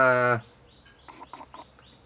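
A man's voice ends a word, then a few faint, short bird calls.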